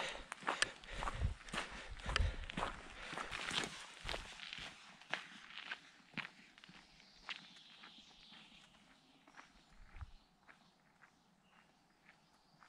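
Footsteps of a hiker walking on a dirt forest path with a few small stones, a steady even pace that fades away as he walks off from the microphone, until nearly nothing is heard near the end.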